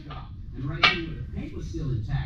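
A single sharp metallic click just under a second in, from hand work under the truck's undercarriage, amid faint voice-like murmuring.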